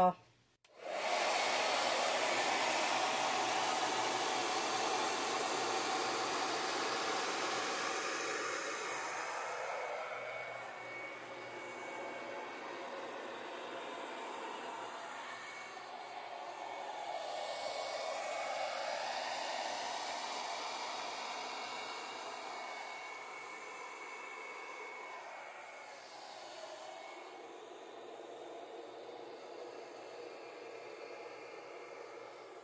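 Handheld hair dryer running, starting about a second in and blowing wet acrylic paint out across a canvas. It is a steady rush of air whose level and pitch drift up and down as it is worked over the paint.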